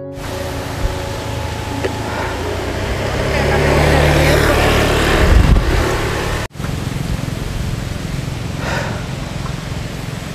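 A motor vehicle passing on the road, its engine hum and road noise swelling to a peak about five seconds in, then cut off abruptly. Steady outdoor background noise follows.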